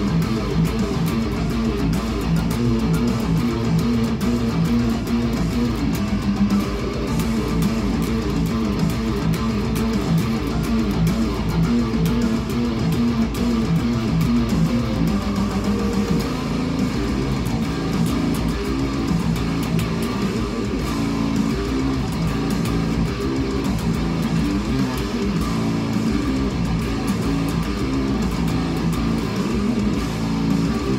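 Caparison Brocken electric guitar playing a heavy metal riff: a dense run of low notes without a break.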